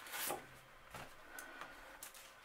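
A sheet of paper sliding and rubbing over a cutting mat as it is turned round by hand, with a short hiss of paper on plastic near the start and a couple of light taps after.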